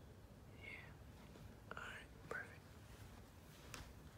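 Near silence with faint, brief whispering in a few short snatches, and a soft click near the end.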